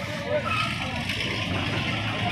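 Busy street ambience: steady traffic noise with scattered voices of people passing.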